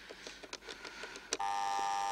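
Telephone: a series of small dialing clicks, then about a second and a half in a loud, steady electronic telephone tone of several pitches at once.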